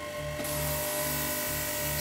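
Micro sandblaster (air-abrasion pen) blasting fine abrasive against a chunk of opal-bearing rock: a steady high hiss that starts about half a second in.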